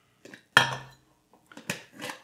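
A plastic lid set onto a glass mason jar and screwed down, giving a few sharp clicks and clinks: a light one about a quarter second in, a louder one about half a second in, and a few more near the end.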